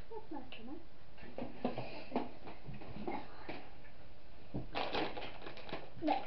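Rustling and crinkling of packaging being handled, in a string of short crackles that grow busiest near the end, with soft voices in the first second.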